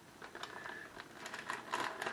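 Faint, irregular small clicks and rustling of a bag of shredded Italian-blend cheese being handled.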